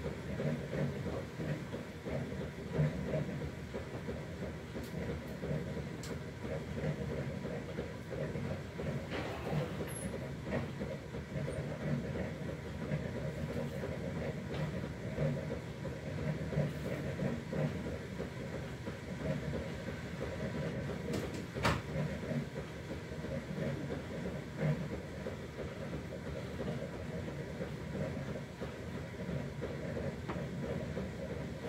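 A steady low rumbling noise with a faint thin hum above it, broken by a few short sharp clicks, the loudest about two-thirds of the way through.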